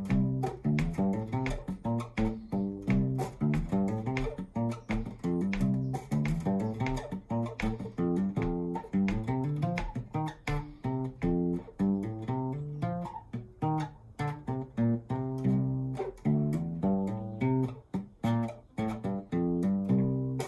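Acoustic bass guitar played with the fingers: a steady, repeating blues bass groove of plucked low notes, several a second.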